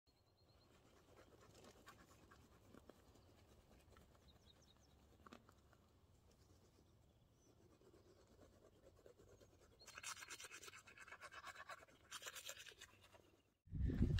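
Manual toothbrush scrubbing teeth: faint at first, then louder, quick back-and-forth strokes for the last few seconds, with a short break, before it cuts off suddenly.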